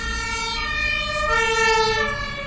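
Two-tone emergency-vehicle siren as a sound effect, holding its higher tone and then stepping down to the lower tone about a second and a quarter in.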